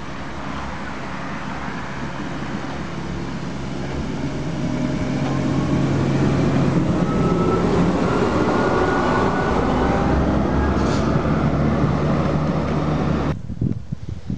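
1955-built electric railcar of the Drachenfelsbahn, a metre-gauge Riggenbach rack railway, running close past: a steady mechanical running sound with a faint whine rising in pitch, growing louder as it nears and loudest as it passes. It cuts off suddenly near the end.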